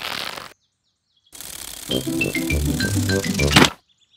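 A cartoon music cue for a toy aeroplane's flight: a short rushing noise cuts off, then after a pause a run of short notes steps down in pitch. It ends in a sudden loud thump as the plane crash-lands.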